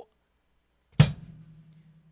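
A single stroke on a drum kit about a second in, bass drum and hi-hat struck together as the first note of a half-time shuffle groove, with the bass drum's low ring lingering afterwards.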